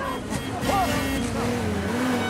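An off-road vehicle's engine running as it drives up through jungle undergrowth, its pitch wavering up and down.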